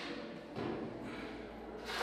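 Trowel scraping and spreading wet mortar across a bare concrete floor for tiling, soft at first, then a louder, longer scrape near the end.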